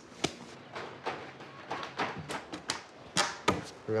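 A series of sharp knocks and taps, the loudest a little after three seconds in, as a timber door jamb is fitted into a wall opening.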